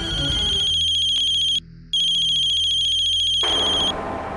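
Mobile phone ringing with a high, fast-trilling electronic ringtone: two long rings with a short break about one and a half seconds in.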